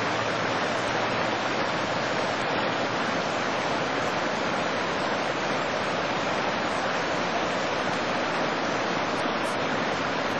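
Small mountain stream running over rocks: a steady, even rushing of water.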